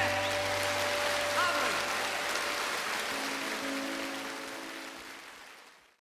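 Audience applauding as the last guitar chord of a live band rings out, the whole sound fading away near the end.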